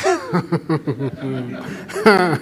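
A man chuckling into a microphone, a quick run of short laughs.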